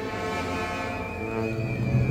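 Processional brass band playing a slow funeral march, holding sustained brass chords.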